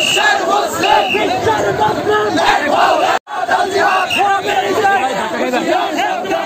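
A large crowd of men shouting protest slogans together, many voices overlapping. The sound breaks off to silence for an instant about three seconds in, then the shouting resumes.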